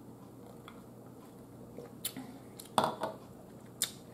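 Drinking from a glass with ice, then a few short sharp clinks and knocks in the second half, the loudest a little under three seconds in, as the glass is handled and set down on the table.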